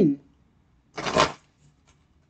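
A brief rustle of tarot cards being shuffled, about a second in, lasting about half a second.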